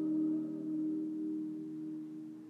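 Piano chord held and slowly dying away in a reverberant church after a soprano's sung phrase ends just as it begins.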